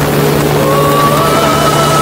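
Motorcycle engine running under way, its pitch rising about half a second in as it accelerates.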